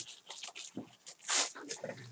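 Foil trading-card pack wrapper crinkling and tearing as it is pulled open, with one louder rustle about one and a half seconds in.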